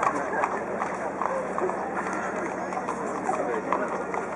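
Horse hooves clip-clopping on cobblestones as a horse-drawn carriage goes by, with people talking all around.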